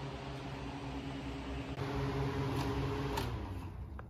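Steady low mechanical hum of fans or machinery in a small room, a little louder in the middle, with a couple of faint clicks near the end.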